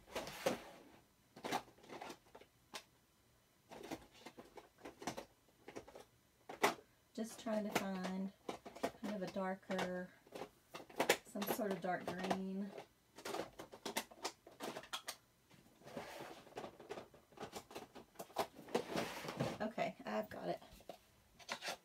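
An indistinct voice in three drawn-out, fairly level phrases around the middle, with scattered clicks and knocks throughout.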